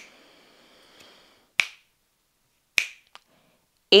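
Finger snaps keeping a slow breath count: two sharp snaps a little over a second apart, the second followed by a faint extra click. Before them, a faint airy hiss of breath let out through one nostril fades away during alternate-nostril breathing.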